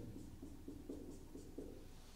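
Marker pen writing on a whiteboard: a quick run of short, faint strokes as letters are written.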